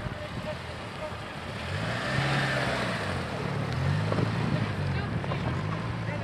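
Yugo hatchback's engine revving up and down several times as the car moves through snow, louder from about two seconds in.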